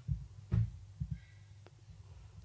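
A few soft low thuds, four in about two seconds, over a faint steady low hum.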